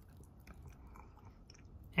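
Faint chewing, a few soft mouth clicks over quiet room tone.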